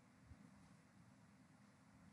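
Near silence: faint room tone with a low hum, and one soft low thump about a third of a second in.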